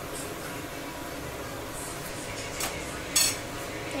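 Brief handling sounds of fingers picking a piece of dhokla off a serving plate: a couple of soft, short rustles or clinks, the loudest about three seconds in, over a faint steady hum.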